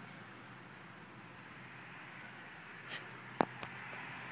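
Quiet outdoor background with a faint steady hiss, broken by one sharp click about three and a half seconds in.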